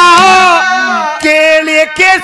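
A man singing a Haryanvi ragni into a microphone, holding long wavering notes; about halfway through his voice slides down to a lower held note.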